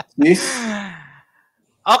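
A man's laughter trailing off into one long, breathy sigh that falls in pitch. Speech starts again near the end.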